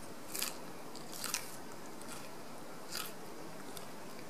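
A person chewing a fresh raw purslane stem, crisp crunches coming about once a second.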